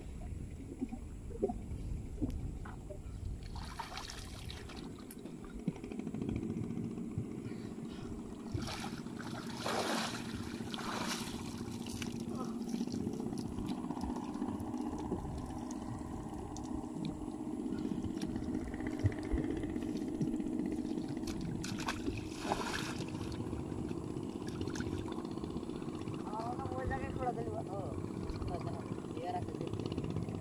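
Shallow river water splashing and sloshing as someone wades and handles a fishing net, with a few louder splashes. Under it runs a steady low hum, and indistinct voices come through near the end.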